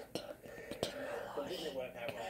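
Soft whispered speech without clear words, with two sharp clicks, the first just after the start and the second a little under a second in.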